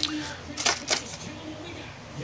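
Handling noises: a few short clicks and rustles, bunched within the first second, as the aluminium paint cup of a gravity-feed spray gun is moved about in its hard plastic case.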